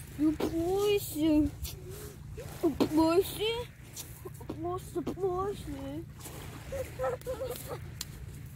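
A woman laughing in several short bouts over a steady low rumble.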